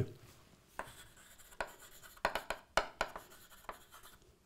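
Chalk writing on a blackboard: a string of short, irregular chalk taps and strokes as a word is written.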